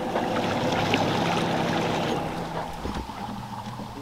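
Boat motor running as the boat moves across the water, with water rushing along the hull and wind. The motor's note drops and the sound eases about three seconds in as the boat slows.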